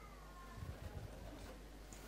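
Faint footsteps on a carpeted stage, a few soft low thumps, with a thin falling whine in the first half-second.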